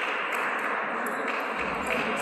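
Table tennis rally: the ping-pong ball clicks sharply as the rubber paddles strike it and it bounces on the table, a few clicks in quick succession, over the steady background noise of the hall.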